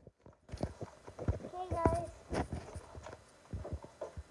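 Irregular knocks and thumps, with a short voiced sound about two seconds in.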